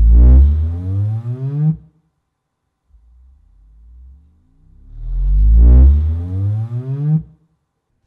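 Subwoofer playing REW measurement sine sweeps from 20 to 80 Hz, each a low tone rising steadily in pitch. One sweep ends about two seconds in. A second runs from about three seconds in until shortly before the end.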